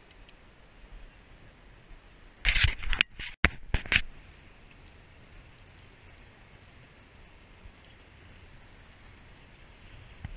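A fishing rod cast from the shore: a burst of swishing and scraping noise for about a second and a half, in a few quick pulses, as the rod is swung and the line runs out. Otherwise a low steady background of wind and water.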